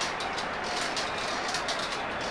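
Glass marbles rolling along a plastic race track: a steady rolling rumble with faint repeated clicks.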